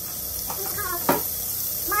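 Margarine sizzling steadily as it melts in a hot skillet over a gas flame, with one sharp click about a second in.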